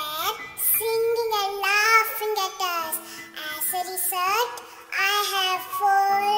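A child's singing voice carrying a melody over backing music, a children's song.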